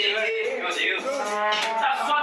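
A man's voice through a microphone, drawn out in long held vowels.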